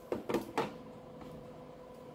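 A few short plastic clicks and knocks as the pink roof piece of a plastic Gabby's Dollhouse toy is handled and fitted into place, all within the first half second, then quiet room tone.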